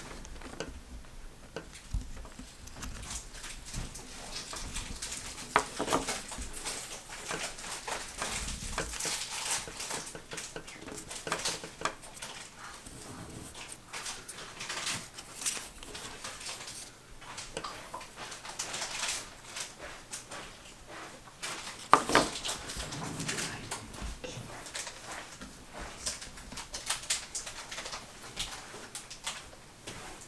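Light handling sounds of thin balsa wood pieces and a glue bottle on a paper-covered worktable: scattered soft taps, clicks and rustles, with one sharper knock about 22 seconds in.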